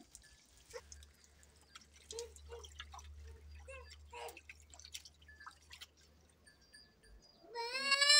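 Faint water splashing and dripping as raw chicken is rubbed and rinsed by hand in a steel bowl, with scattered small taps and splashes. Near the end a loud, drawn-out cry rises and falls.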